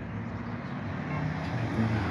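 A steady, engine-like rumble in a haze of noise, growing slightly louder.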